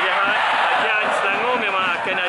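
Mainly a man's voice talking in Malay, over the steady noise of a stadium crowd.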